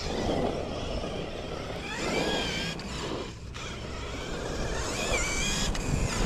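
RC4WD Miller Motorsports Rock Racer, a brushless electric RC rock racer, driving over asphalt: a steady rush of tyre and drivetrain noise, with the motor's whine rising and wavering in pitch twice as the throttle is worked, about two and five seconds in.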